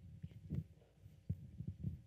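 A live handheld microphone being carried and handled: irregular low thumps and bumps, several a second.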